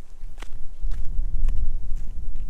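Footsteps in flip-flops on bare rock: sharp slaps about two a second. A low rumble swells under them in the middle.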